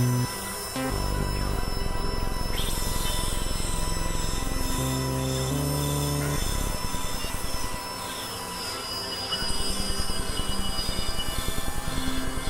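Experimental electronic synthesizer music: steady high tones and drones over low held notes that change every second or so, then a fast, pulsing flutter from about nine or ten seconds in.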